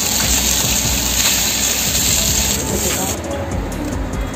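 Salmon pieces sizzling skin-side down in hot oil in a stainless steel pan, a steady hiss that cuts off about three seconds in.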